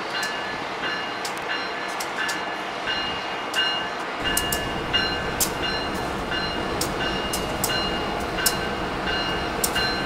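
A locomotive moving slowly through a rail yard with its bell ringing, about two strokes a second. A low rumble of the train joins about four seconds in.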